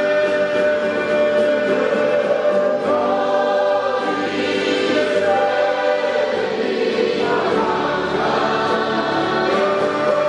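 A group of voices sings a gospel worship song together, led by a voice on a microphone, with long held notes.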